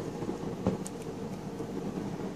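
Faint rustle and handling noise of a large paper art book as a page is turned, with one light knock just under a second in.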